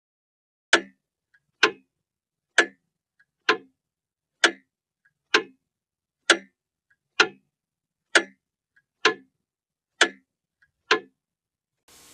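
Mechanical clock ticking: a sharp tick a little under once a second, with a much fainter click between every other pair of ticks.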